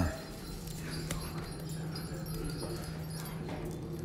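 A person's cough right at the start. Then dogs moving about on a hard tiled floor: scattered claw clicks over a steady low hum.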